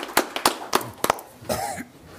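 Applause in a council chamber dying away to a few scattered hand claps, with a short vocal sound near the end.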